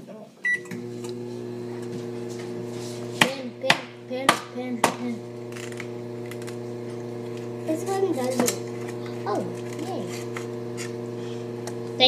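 Microwave oven starting with a short beep, then running with a steady hum. A few clicks and muffled children's voices sound over the hum.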